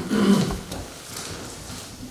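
A man's brief, low voiced murmur at the start, then a quiet room with light rustling of paper sheets.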